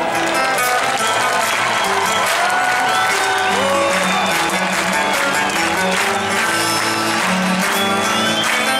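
Live Greek folk band playing an instrumental passage: a melody with sliding, bending notes over plucked lute and bass, with audience applause underneath.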